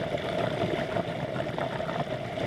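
Underwater sound picked up through a camera's waterproof housing: a steady hum with faint crackling throughout.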